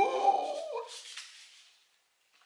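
A drawn-out, wavering howl-like cry that rises and then falls in pitch, loudest at first and fading away over about a second and a half.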